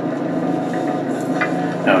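A steady mechanical hum with a low buzz, running evenly throughout.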